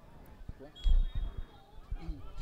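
Faint distant shouts of players on an outdoor football pitch, with a low thump about a second in.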